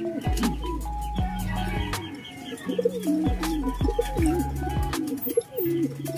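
Pigeons cooing, a rising-and-falling call repeated every second or so, over background music with a steady stepped bass line.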